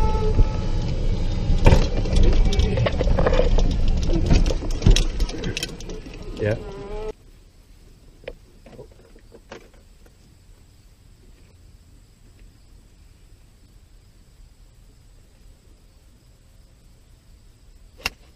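Golf cart running, with a heavy low rumble and rattling through its body-mounted camera, cutting off abruptly about seven seconds in. After that only a quiet outdoor background with a faint high steady tone and a few soft clicks remains.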